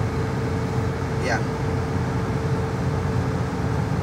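Steady engine and road noise inside a moving car's cabin, with a faint steady hum that stops about halfway through.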